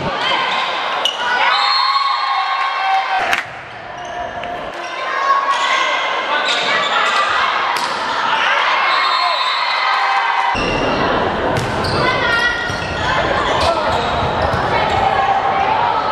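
Volleyball rally in an echoing sports hall: sharp smacks of the ball being hit, against a steady background of players and spectators calling out.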